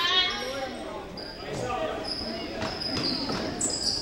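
Basketball game on a hardwood gym floor: the ball bouncing and sneakers squeaking in short, high chirps as players move, in a reverberant gym.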